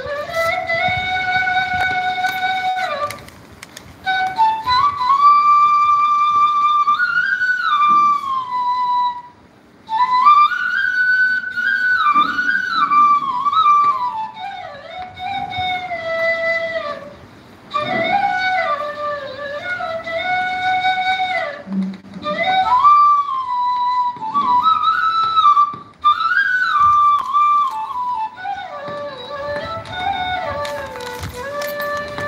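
Bansuri (Indian bamboo flute) playing a slow solo melody of held notes and sliding bends, in phrases with short breaks for breath.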